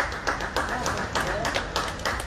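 Scattered, uneven hand claps from a few people in a large arena, with voices underneath.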